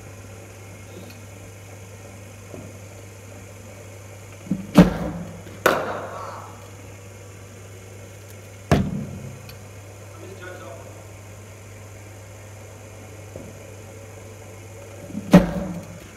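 Sharp knocks with a short echo in an indoor cricket net hall: two close together about a third of the way in, one a few seconds later and one near the end, over a steady low hum.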